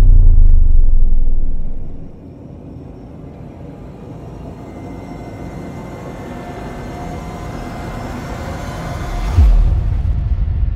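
Cinematic logo-sting sound design: a deep boom fading away over about two seconds, then a rising swell that builds for several seconds and ends in another low hit near the end.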